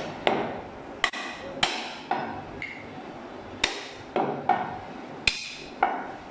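Heavy meat cleaver chopping a mutton leg through meat and bone on a round wooden chopping block: about ten sharp chops at an uneven pace, each with a brief ring.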